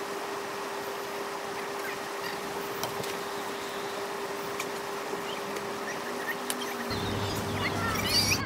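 Intex inflatable hot tub's bubble system running, heard sped up along with the picture: a steady hiss with one steady hum tone. Brief high squeaks and clicks are scattered through it.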